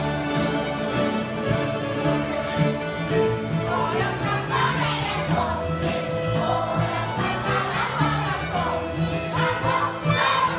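Swedish folk music played by a group of fiddles, with a steady pulse of about two beats a second.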